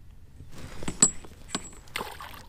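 Handling of metal fishing tackle in a kayak: a sharp click with a brief high ring about a second in and a smaller click half a second later. Near the end comes a splash in the lake water beside the kayak.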